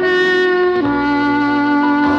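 Instrumental Christmas music from a vinyl LP: a long held wind-instrument note that steps down in pitch a little under a second in, over lower sustained notes.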